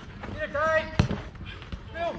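A football being kicked, one sharp strike about halfway through, with smaller knocks of play around it and a player's shout just before the strike.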